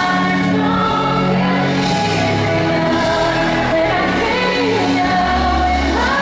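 Live pop song played through a concert PA: a woman singing lead over sustained chords and a bass line, heard from among the audience.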